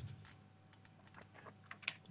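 Faint, scattered computer keyboard clicks, with a few sharper taps near the end.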